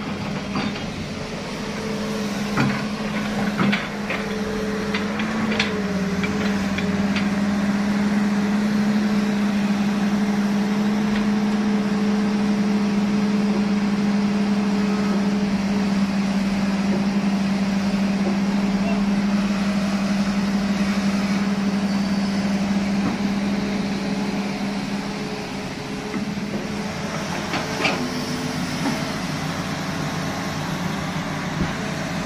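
Heavy diesel machinery engine running steadily at high revs with a constant drone, louder through the middle and easing off near the end. A few short knocks come near the start.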